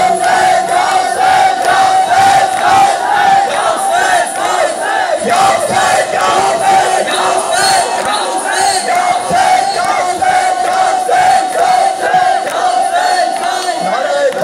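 Large crowd of mourners chanting loudly in unison with a steady pulse of about two beats a second, over a long held tone.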